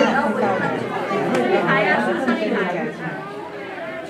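Overlapping chatter of several visitors' voices, continuous and a little quieter near the end.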